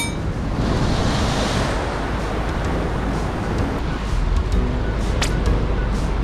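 Sea surf washing against a rocky shoreline, a steady rushing noise with wind buffeting the microphone. About four seconds in, a deeper low rumble joins it.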